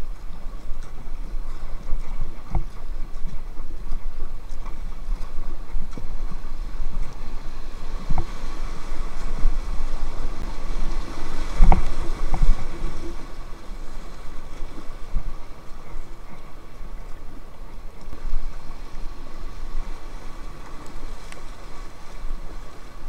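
River water rushing and splashing around an inflatable kayak running rapids at high water, with scattered low knocks and wind buffeting the camera microphone. The rush and knocks are loudest about halfway through, in white water.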